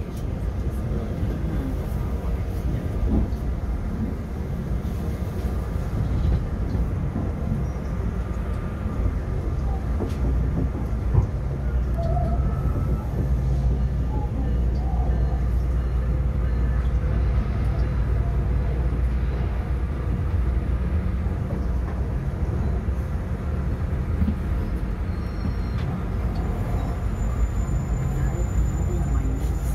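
Running noise of a Metrolink commuter train heard from inside the moving coach: a steady low rumble of wheels on the rails. A single sharp click sounds about eleven seconds in.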